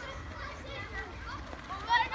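Children's voices: scattered calls and chatter from a group of running schoolchildren, with a louder high-pitched shout right at the end.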